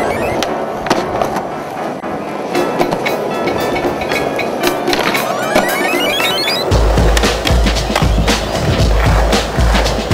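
Music soundtrack with rising synth sweeps and a heavy bass beat that comes in about two-thirds of the way through, with skateboard sounds (wheels rolling and board clacks on concrete) mixed in.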